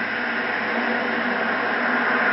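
Steady hiss with a faint low hum: the background noise of a late-1980s film soundtrack.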